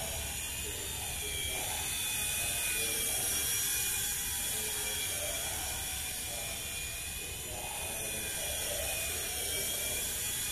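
Nine Eagles Bravo SX micro RC helicopter in flight: the steady high-pitched whine of its small electric motor and rotor, wavering a little in pitch as the throttle changes.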